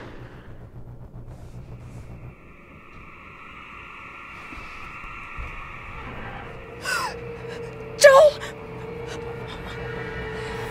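A steady low drone, joined by a single held tone about six seconds in. About eight seconds in comes a woman's sharp gasp, the loudest sound, with a fainter short sound just before it.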